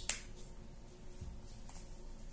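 Plastic cosmetic tube being handled: two sharp clicks in quick succession at the start, like its cap snapping, then a fainter click about half a second later.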